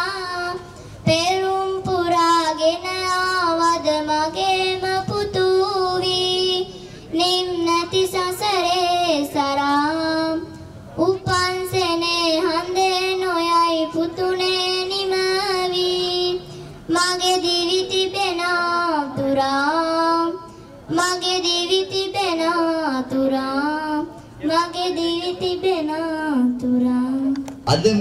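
A young girl singing alone, with no accompaniment, into a microphone. Long held phrases follow one another with short breaks between them, several of them ending on a lower note.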